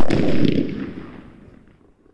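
A large firecracker going off with a single loud blast, its rumbling echo rolling on and fading away over about two seconds.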